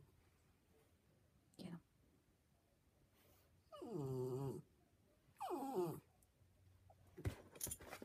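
A dog vocalizing in drawn-out, whining moans: a short call just under two seconds in, then two longer calls about four and five and a half seconds in, each falling in pitch.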